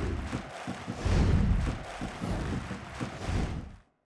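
Sound-design sting for an animated outro: a whooshing noise with three low rumbling swells, at the start, about a second in and near the end, fading out just before the end.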